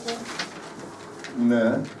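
A person's brief drawn-out voiced sound, about one and a half seconds in, after a quieter stretch of room sound.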